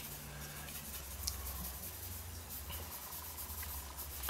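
Faint soft rubbing of a blending brush worked gently over graphite on Bristol board, over a steady low hum.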